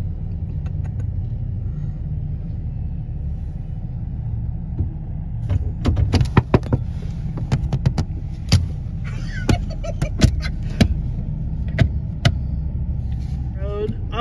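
A car's steady low rumble inside the cabin, then from about five seconds in a dozen or so sharp knocks and bangs of hands on the car's body and windows, coming irregularly over about seven seconds.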